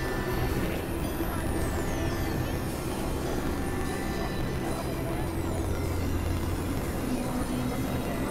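Experimental electronic noise drone: a dense, steady low rumbling drone with a few held tones, and thin high whistles that slide downward twice.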